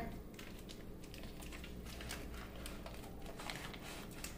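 Faint, irregular crinkling and ticking of a paper butter wrapper being peeled off sticks of butter, over a low steady hum.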